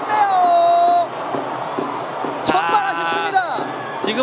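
Television football commentary: a drawn-out, falling vocal exclamation from the commentator as a shot at goal is missed, then stadium ambience, then a second held exclamation from a little after halfway.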